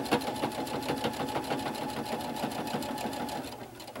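Electric sewing machine running at speed, stitching a zigzag seam through layered cuddle fabric: a steady motor hum with a rapid, even clicking of the needle. It stops about three and a half seconds in.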